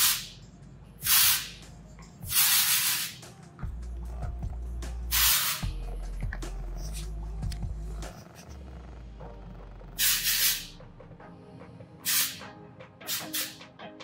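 Aerosol can of Oribe Dry Texturizing Spray hissing in about eight short bursts as it is sprayed into hair. Background music with a low beat comes in about four seconds in.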